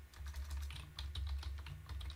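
Computer keyboard typing: a quick run of keystroke clicks as a word is typed, over a steady low hum.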